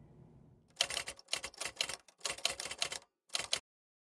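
Typewriter keys clacking in quick runs of strokes, with two short breaks, stopping about three and a half seconds in.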